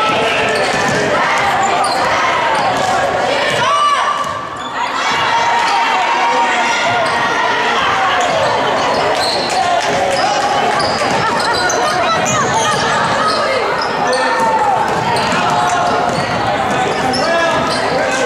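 Basketball being dribbled on a hardwood gym floor, with many short squeaks from sneakers and a steady mix of player and spectator voices, all echoing in a large gymnasium.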